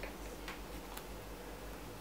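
Quiet room noise with a few faint ticks, one near the start and one about a second in.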